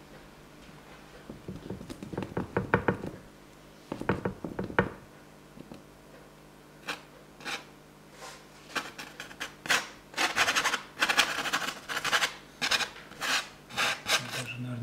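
A palette knife scraping filler paste onto a canvas in two short bursts of strokes, then, from about halfway, a stiff bristle brush scrubbing rapidly over the rough, textured surface in a run of short scratchy strokes.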